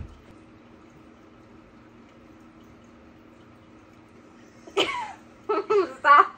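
A short knock, then a faint steady low hum of room tone. Near the end come short, loud bursts of a person's voice, laughing and exclaiming.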